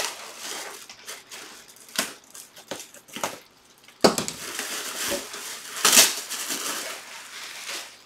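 Plastic wrapping and cardboard packing around a boxed football helmet crinkling, rustling and tearing as it is pulled open, with scattered clicks. The rustling turns louder about halfway through.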